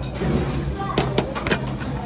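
Background music under a few sharp clicks around the middle, metal chopsticks tapping a bowl while eating.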